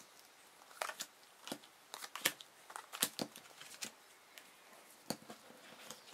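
Laminated playing cards being dealt onto a table and picked up: scattered light clicks and plastic crinkles as the cards slap down and rub against one another.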